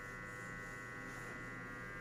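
Faint, steady electrical hum, with a low drone and a thin high whine over it.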